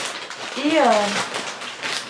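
Crinkling and rustling of large plastic potato-chip bags being picked up and handled, a dense crackle throughout.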